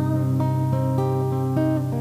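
Acoustic guitar playing an instrumental passage: single notes picked one after another over a held low note.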